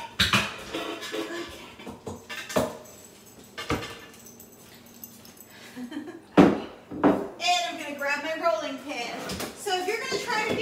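Kitchen clatter: a few knocks of dishes and utensils being handled, then a mixing bowl set down on a wooden counter with a loud knock about six seconds in. A woman's voice follows near the end.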